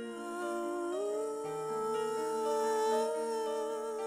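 Slow, soft worship music: a woman hums a long held note over keyboard chords. Her voice slides up about a second in and then holds the note with a slight waver.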